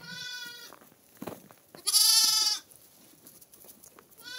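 Sheep bleating twice: a shorter, fainter bleat at the start and a louder, longer one about two seconds in.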